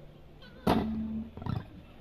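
Fingerstyle acoustic guitar: a low held note fades away, then two sharp percussive hits, the first with a short ringing note, come less than a second apart.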